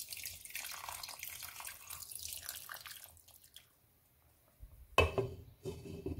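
Water poured through a slotted spoon onto the rice in a pot, splashing steadily for about three and a half seconds as the water is added to the plov. About five seconds in, a glass pot lid with a metal rim clatters several times as it is handled onto the pot.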